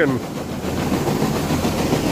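Farm machinery running steadily: an engine's rough, even noise with no clear pitch.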